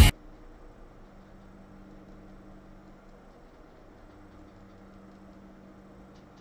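A music jingle cuts off right at the start, leaving only a faint, steady low hum with hiss.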